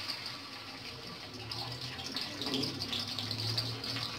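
Sliced red onions sizzling in hot cooking oil in an aluminium kadai: a steady hiss with light crackling as more onion pieces are dropped in.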